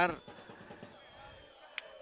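A man's voice cut off after one syllable, then faint background noise from the pitch, with a single sharp click near the end.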